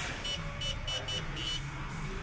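Step Automation Rock 15+ CNC press-brake controller's touchscreen giving a quick run of about six short, high beeps, one per key tap, as a bend angle is typed on its on-screen numeric keypad.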